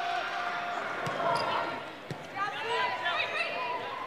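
Indoor volleyball rally: a few sharp slaps of the ball being served and played over a steady arena crowd hubbub. Shouting voices rise about halfway through.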